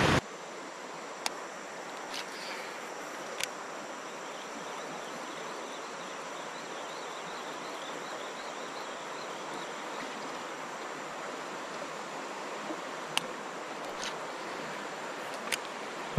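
Steady outdoor ambience on a calm tropical forest river: an even hiss with faint repeated insect chirps for a few seconds mid-way, and a handful of sharp isolated clicks.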